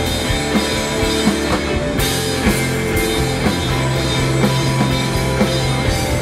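Live rock band playing an instrumental passage: electric guitar and bass guitar over a drum kit keeping a steady beat, with a cymbal crash about two seconds in.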